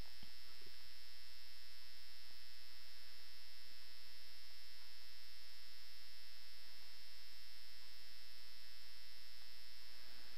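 Steady electrical mains hum in the recording chain, with a faint steady high whine above it. One or two faint clicks come just after the start.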